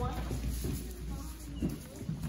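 Children's footsteps and shuffling on a wooden gym floor, with scattered faint children's voices.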